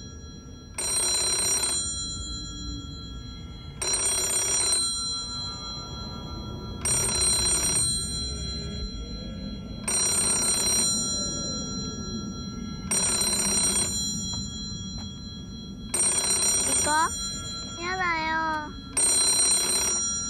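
Old green public payphone ringing: seven rings of about a second each, evenly spaced three seconds apart. A child's voice speaks near the end.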